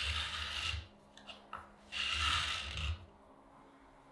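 A PVC fingerboard deck being rubbed against coarse sandpaper, two spells of rasping sanding with a short gap between.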